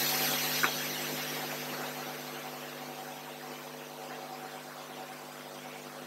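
Steady electrical hum with a fan-like hiss that slowly fades, and a single faint click about two-thirds of a second in.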